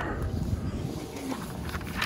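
Low rumble of wind and handling noise on the microphone, with light rustling of a paper instruction booklet held open in the hand.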